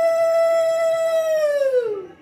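A single long, loud, steady note held at one pitch, which slides down and stops near the end.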